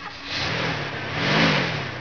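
Car engine sound effect as the car pulls away, the engine pitch rising and falling once about halfway through.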